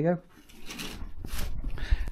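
Curtains being drawn shut: two short swishes of fabric and curtain runners sliding along the rail, then a low bump near the end.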